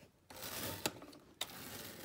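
Plastic toy stable doors being pushed shut and latched by hand: a rustle of handling with two sharp plastic clicks, the second about half a second after the first.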